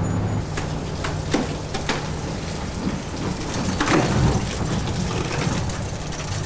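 Heavy house-moving trailer rolling onto timber blocking over a steady low engine hum, with irregular cracks and creaks from the wood under the load, loudest about four seconds in.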